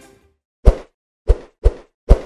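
Transition sound effect for an animated countdown number: three short, sharp, bass-heavy hits. The first comes about two-thirds of a second in, and the last two come close together near the end.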